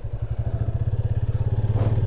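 Motorcycle engine running with a steady, fast low pulse as the bike rides off at low speed, growing slightly louder.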